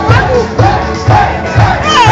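Live Cameroonian band music with a steady low drum beat about twice a second, with crowd voices shouting and calling out over it.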